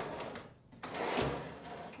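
Steel tool chest drawers sliding on their metal runners: one drawer pushed shut in the first half-second, then a lower drawer pulled open, with a soft low bump about a second in.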